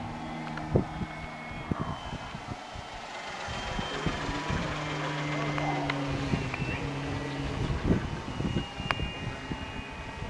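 Engine of a large radio-controlled model aircraft flying overhead, a steady drone heard in two stretches, over wind noise and handling knocks on the microphone.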